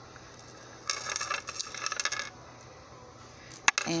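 A beaded necklace and its metal chain jingle and clink in the hands for about a second and a half, followed by a single sharp click near the end.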